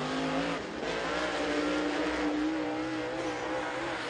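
Dirt late model race car's V8 engine running hard on a qualifying lap. The engine note dips briefly about half a second in, then holds steady.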